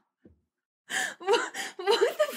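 A woman's sharp gasp of shock about a second in, after a brief pause, followed by short breathy voiced cries of surprise.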